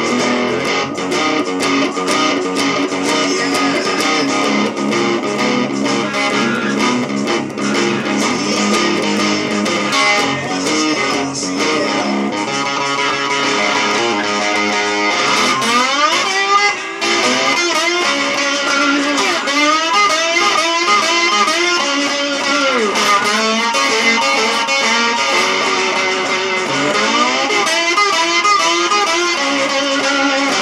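Distorted electric slide guitar playing blues: an Epiphone Les Paul Special II in open D-flat tuning, played with a metal slide through an overdriven Epiphone Studio 15R amplifier. The first half is a steady rhythm pattern; from about halfway in, the slide glides up and down between notes in lead lines.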